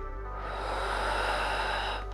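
A long breathy exhale, swelling and then easing over about a second and a half, during a held squat. Quiet background music runs beneath.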